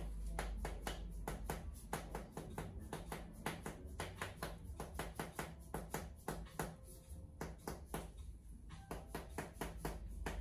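Red rubber mallet tapping a rod held against a man's shoulder: rapid, light, sharp taps, about three to four a second, slightly uneven in rhythm.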